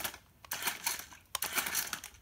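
Sharper Image Robot Combat toy robot's small electric motors and plastic gears running in two short bursts, a rattling, clicking clatter as the robot moves in answer to the remote's right button.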